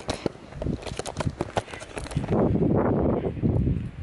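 Handling noise from a hand-held camera being turned around: a string of small clicks and knocks, then about a second and a half of loud rustling and rumbling on the microphone that stops abruptly near the end.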